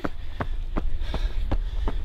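Running shoes striking asphalt at a fast uphill sprint cadence, a sharp footfall about every third of a second, over a steady low rumble.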